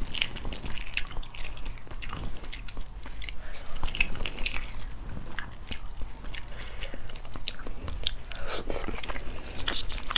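Close-miked crackling of eggshell being peeled and picked off a boiled egg by hand, mixed with mouth sounds of chewing the egg, as a steady run of small clicks.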